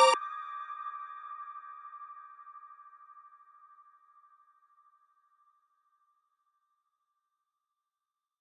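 Music from the car's audio system stops just after the start, leaving one high held note that fades away over about two seconds, followed by near silence.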